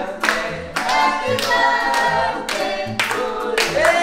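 A group of people singing a birthday song together, with hand clapping throughout.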